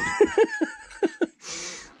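A man laughing in a quick run of short chuckles.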